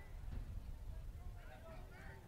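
Faint background sound in a pause between commentary: a low, steady rumble with distant, indistinct voices about a second in.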